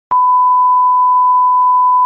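Loud television test-pattern tone: one steady, high-pitched beep held for nearly two seconds, then cut off suddenly.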